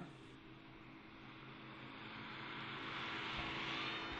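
Small single-engine propeller kit aircraft flying low past, its engine drone growing steadily louder as it approaches.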